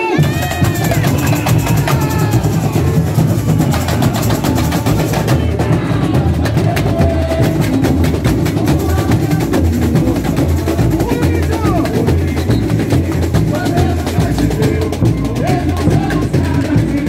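A samba school bateria playing: a massed drum corps of bass drums, snares and hand drums beating a dense, steady samba rhythm.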